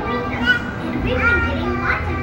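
Young children's voices and chatter over background music, with a steady low rumble underneath.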